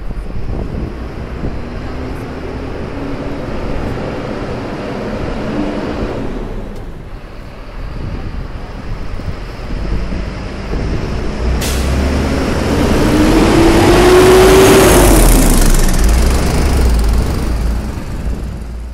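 City street traffic: motor vehicles passing close by with a low rumble, their engine notes rising in pitch. The loudest pass comes about two-thirds of the way in, rising and then falling away.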